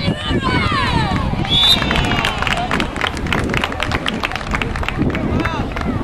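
Several voices shouting and cheering over each other at a youth rugby match, their pitch sliding up and down in the first two seconds, followed by a few seconds of hand clapping.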